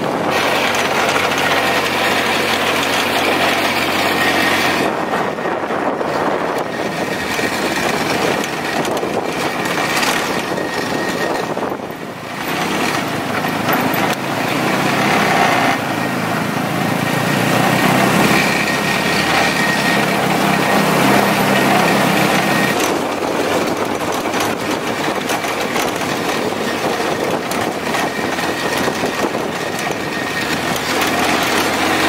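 Off-road buggy's engine running while driving along a dirt track, heard from the seat of the open buggy with road and wind noise mixed in. The sound eases off briefly about twelve seconds in, then picks up again.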